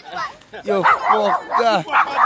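Excited voices calling out and laughing in a string of short, sliding exclamations.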